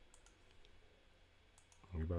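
Near silence with a few faint, scattered clicks from a computer being operated.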